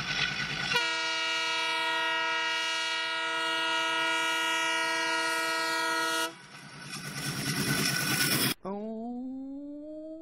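Diesel locomotive air horn sounding one long, steady multi-note blast of about five and a half seconds that cuts off, followed by the rushing noise of the train running past. Near the end, a separate pitched wail rises steadily in pitch.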